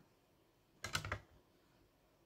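A short cluster of light clicks and taps about a second in, made by a hard plastic graded-card slab being handled and set down.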